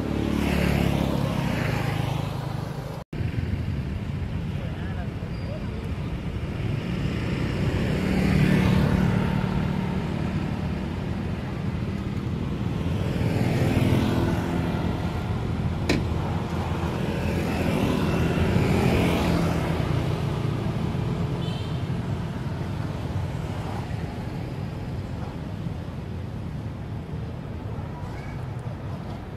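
Road traffic: motor vehicles pass one after another over a steady rumble, each swelling and fading, about four times. The sound cuts out for an instant about three seconds in.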